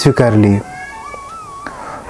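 A man's voice speaking briefly, then soft background music under the pause: a slowly wavering, flute-like melody line.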